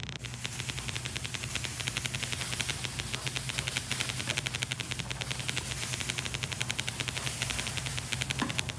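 Grated laundry bar soap being sprinkled over wet, foamy sponges in a bowl, with a rapid, even ticking.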